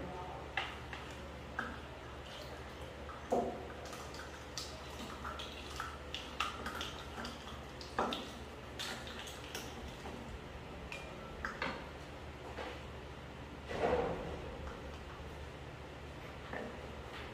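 Plastic measuring cups and jars being handled on a table: scattered light clicks and knocks as the nested cups are pulled apart, with a few louder knocks about three, eight and fourteen seconds in. A steady low hum runs underneath.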